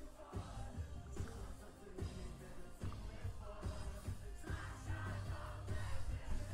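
Live concert recording of a male pop singer with a band, played back at low level: singing over a steady beat and bass, with crowd noise from the audience.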